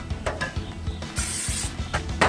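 A short hiss of aerosol cooking-oil spray onto hot grill grates, about a second in and lasting about half a second, over background music.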